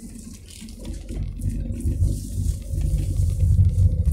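Low rumble of a car driving, heard from inside the cabin, growing louder after about a second.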